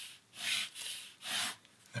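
Ballpoint pen scratching across paper on a desk as a long straight line is drawn, in two strokes: one about a third of a second in, the other just after a second in.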